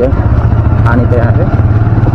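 Motorcycle engine running steadily at low road speed, a continuous low throb. A voice is heard briefly about a second in.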